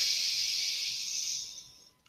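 A woman taking one long, deep audible breath in close to the microphone: a steady breathy hiss lasting nearly two seconds that fades out near the end.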